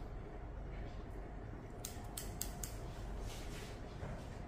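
Barber's scissors snipping through wet hair, a quick run of about four crisp snips around two seconds in, then a softer one.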